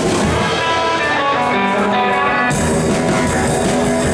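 Live rockabilly band playing: electric guitars over upright double bass and drum kit. The guitar carries the first part, and the bass and drums come in strongly about two and a half seconds in.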